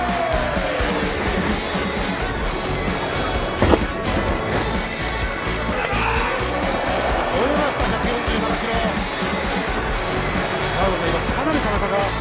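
Baseball stadium crowd noise: fans cheering and chanting, with music from the stands. There is a single sharp crack about four seconds in.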